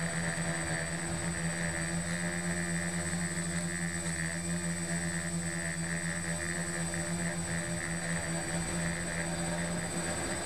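Small quadcopter's electric motors and propellers buzzing steadily in flight, picked up close by its onboard camera: a low steady hum with a thin high whine above it.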